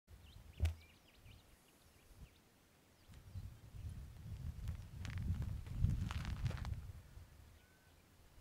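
Low rumble of wind on a phone microphone outdoors, swelling in the middle and fading near the end, with a sharp click about half a second in and a few faint high chirps in the first second or so.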